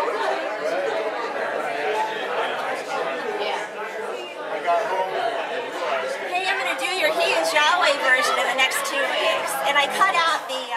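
Many people chatting at once in a hall: overlapping conversations, with a nearer voice coming through louder in the second half.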